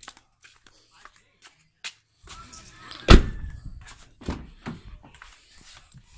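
Car door handled with a loud thunk about halfway through, followed by a few lighter knocks and rustling as someone climbs into the driver's seat.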